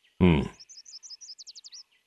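A man's short 'ừ' of assent, then a small songbird chirping: a quick run of high repeated notes that ends in a fast trill, with fainter chirps behind it.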